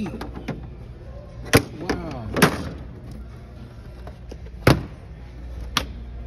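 Four sharp knocks spaced through a few seconds, over a steady background hum, with faint voices in the background.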